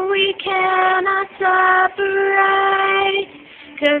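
Solo female voice singing a slow ballad, holding several long, steady notes with short breaks between them. After a pause a little past three seconds in, a new phrase begins on the word "Because".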